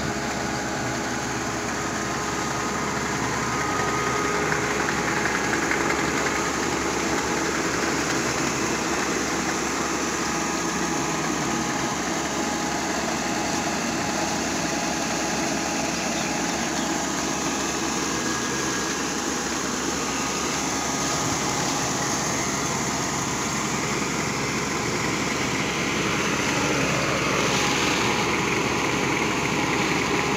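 Kubota KAR90 rice combine harvester running steadily, its engine and threshing machinery making a continuous hum, with rice grain pouring from its unloading auger.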